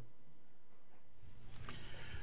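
A pause between speech: only faint steady background noise, growing a little louder after about a second, with a low hum.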